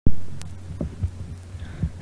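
A steady low hum in the recording, with a loud thump as the recording starts and a few soft low thuds after it.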